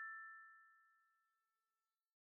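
The last bell-like chime note of a short jingle ringing out and fading away, gone about a second in.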